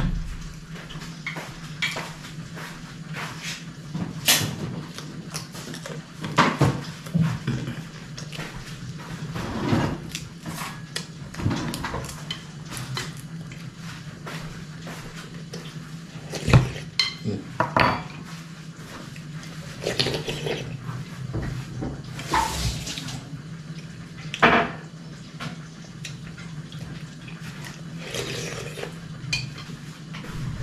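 A metal spoon clinking and scraping against a metal pot at irregular intervals as soup is eaten from it, over a steady low hum.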